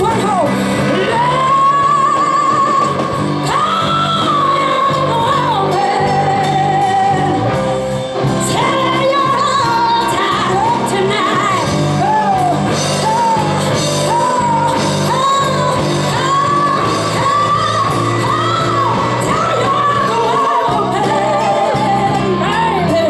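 Live blues band: a woman singing long, wavering held notes into a microphone over electric guitars, bass guitar and drums.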